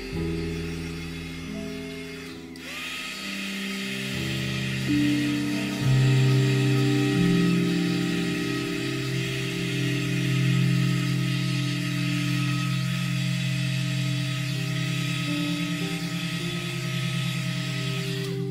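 Soft ambient background music with long low notes, over the steady hiss and whine of a handheld heat gun. The heat gun starts a few seconds in and is being played over wet poured resin to raise white lacing.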